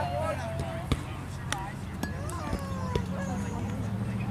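Voices calling out across an open ballfield, with one long drawn-out call about two seconds in, and a few sharp knocks between pitches.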